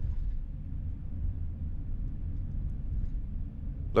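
Steady low rumble of engine and road noise heard inside the cab of a vehicle driving along a paved road.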